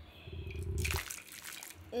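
Hot water splashing and sloshing in a shallow plastic tray, starting about half a second in and lasting about a second.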